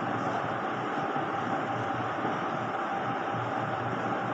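Steady background noise, an even hum and hiss with no distinct events, between the lecturer's words.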